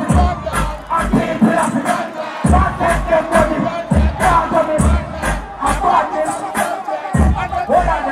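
Live dancehall music through a PA: a beat with heavy bass hits about twice a second and ticking hi-hats, with a deejay chanting on the microphone and the crowd shouting along.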